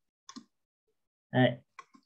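A quick pair of short clicks about a third of a second in, made on the computer as the presentation slide is advanced; a man then says one short word, and two faint clicks follow near the end.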